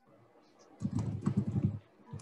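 Computer keyboard typing: a quick run of closely spaced keystrokes starting just under a second in, picked up through a video-call microphone.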